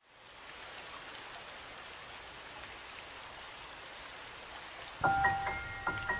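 Steady rain-like patter on its own, then solo piano notes start about five seconds in, a few bright notes struck one after another.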